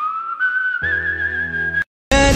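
A single whistled note that slides up and is then held, wavering toward the end, over a low bass tone from a backing track that joins about a second in; it cuts off abruptly just before a new clip.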